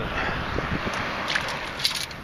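Pebbles and shell fragments rattling and crunching in a perforated metal sand scoop as it is shaken to sift out a metal detector target, with a few sharper clicks among a steady noisy wash.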